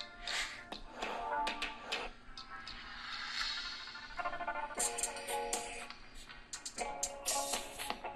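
Music playing through the Redmi Note 11S's stereo speakers, top and bottom, as a test of the phone's audio. It is the intro jingle of a video playing on the phone, with tones and percussive hits.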